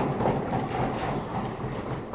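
Audience applauding, a dense patter of clapping that begins to fade near the end.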